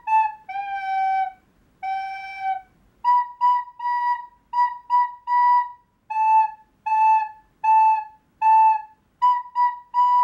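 Plastic recorder blown by mouth, picking out a simple warm-up tune on three neighbouring notes. Two long, lower notes come early, then runs of short, separately tongued notes repeat on the two higher pitches.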